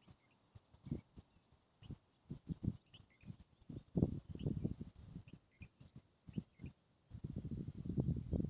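Irregular low knocks and rumbles of wind and hand movement against a phone microphone, heaviest about four seconds in and again near the end. Faint, short high chirps sound in the background throughout.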